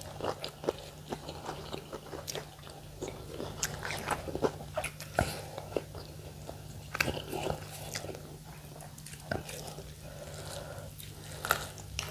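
Two people eating rice and fish with their fingers, close to a clip-on microphone: chewing and mouth smacks with many scattered small clicks, over a low steady hum.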